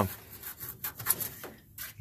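A hand handling old wiring and rusty sheet metal: a scatter of light scrapes and clicks.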